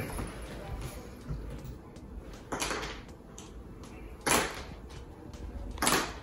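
A man breathing out hard three times, about a second and a half to two seconds apart, once with each push-up rep under a weighted backpack.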